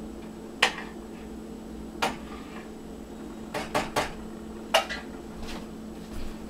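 Dishes and cutlery being handled in a kitchen: about seven sharp clinks at irregular intervals, three of them in quick succession near the middle, over a steady low hum.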